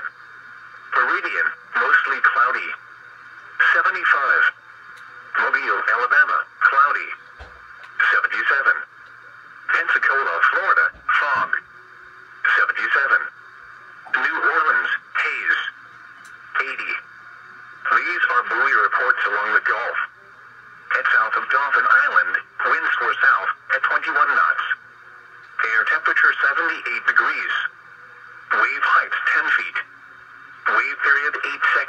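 NOAA Weather Radio broadcast voice speaking through a small radio speaker, narrow and tinny, with a faint steady hum between the words.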